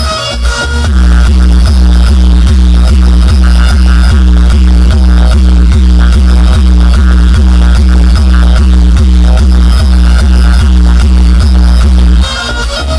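Loud DJ music played through a truck-mounted speaker stack, with a very heavy bass line and a fast, even beat. The music dips briefly about half a second in, then runs steadily.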